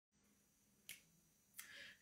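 Two faint, sharp finger snaps, the first just under a second in and the second about two-thirds of a second later, trailing into a brief hiss, over near silence.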